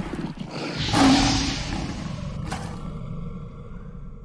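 A roaring animal sound effect in a logo intro, swelling to its loudest about a second in and then fading. A sharp click comes about two and a half seconds in.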